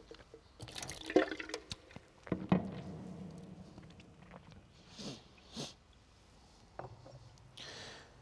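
Red wine spat into a handheld spittoon bucket, the liquid splashing and dripping into it, followed by a few light knocks.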